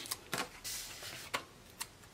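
A few faint clicks and taps with a short soft rustle: paper and sticker sheets being handled.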